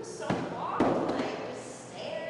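Two dull thuds, a small one about a third of a second in and a louder one just before the one-second mark that dies away over about half a second.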